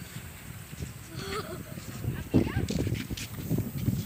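Indistinct voices in the background, with irregular low rumbling from wind on the microphone that grows stronger in the second half.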